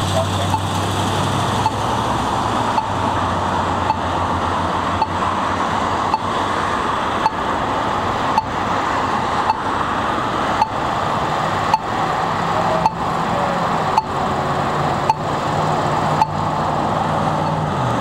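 Pedestrian signal ticking evenly about once a second while the walk phase runs out and the hand flashes, over steady road traffic and the low hum of an idling vehicle.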